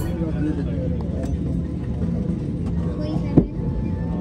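Airliner cabin ambience at the gate: a steady low drone with passengers' voices talking in the background, and one sharp thump about three and a half seconds in.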